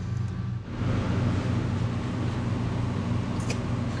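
Steady low mechanical hum of workshop background. From under a second in, a steady hiss joins it, with one brief click near the end.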